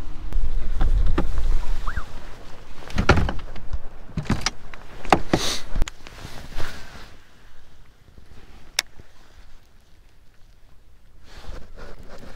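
A low rumble for the first two seconds, then a string of knocks, clicks and rubbing as the camera is handled and jostled in a small fishing boat, with a quieter stretch near the end.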